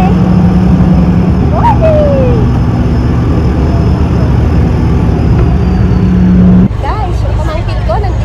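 Docked fast ferry's engines running with a steady low hum, under a low rumble and a few voices. The hum cuts off suddenly about two-thirds of the way through, leaving the rumble and voices.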